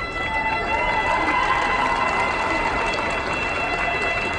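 Chinese orchestra music with a steady high tone held throughout, like a wind-instrument drone, over the chatter of a crowd in a large hall.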